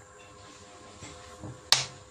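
A single sharp snap, the loudest sound here, near the end, with a short tail. Two much fainter ticks come shortly before it, over a faint steady hum.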